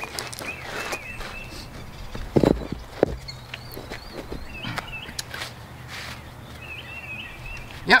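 Two sharp knocks, about two and a half and three seconds in, as concrete landscape blocks are handled and set into a shallow edging trench. Birds chirp on and off in the background.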